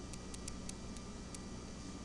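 Steady low electrical hum and hiss from the recording setup, with a few faint, light ticks of a stylus on a tablet while a word is handwritten.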